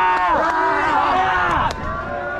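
Young people shouting and cheering in overlapping, drawn-out calls that slide down in pitch, dying away near the end.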